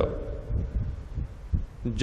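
A pause in a man's speech into a close microphone, filled with low, muffled, irregular thumps and a faint hum. His voice comes back just before the end.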